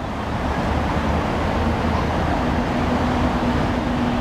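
F450 quadcopter's brushless motors and propellers spinning on the ground without lifting off, a steady whirring noise with a steady hum coming in about halfway through; the flyers take it for a nearly flat battery.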